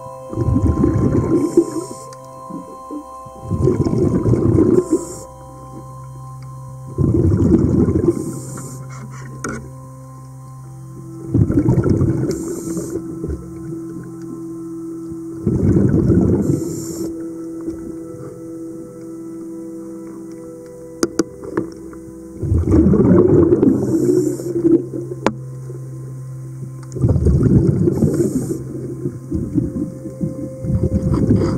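A diver's breathing regulator underwater: a bubbly rush of exhaled air comes about every four seconds, seven times, each lasting about a second. A steady low hum with a few held tones runs beneath.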